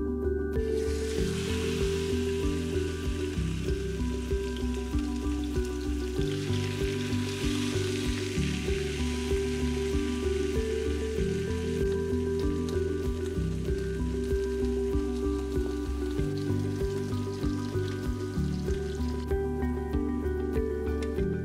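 Chicken breasts frying in olive oil in a ceramic-coated pan: a steady sizzle that starts about half a second in as the chicken goes into the hot oil and is strongest in the first half. Background music with a steady beat plays throughout.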